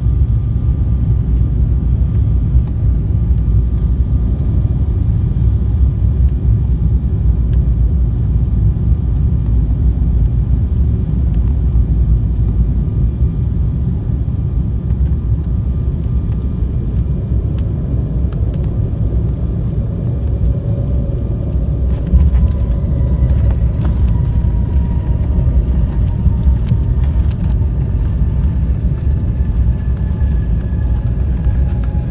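Steady low rumble of a jet airliner's cabin on final approach and landing. About two-thirds of the way in there is a thump followed by rattling as the wheels run on the runway, and a whine of engine tones sets in and slowly falls in pitch as the plane decelerates.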